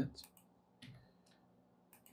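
A few faint separate clicks of a computer mouse and keyboard while working at the computer, spread across about two seconds, after the tail of a spoken word.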